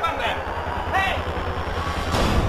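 A person's short wavering cries, one at the start and one about a second in, over a steady low rumble.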